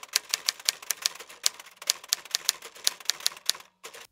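Typewriter sound effect: a quick, uneven run of sharp key clicks, about six a second, stopping shortly before the end.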